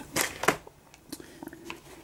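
Laserdisc jackets in plastic sleeves being handled and slid over one another: two brief rustles near the start, then a few faint ticks.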